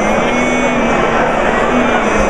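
Barbershop quartet singing a cappella, mixed male and female voices holding sustained notes, half-buried under the steady chatter of a crowded, echoing lobby.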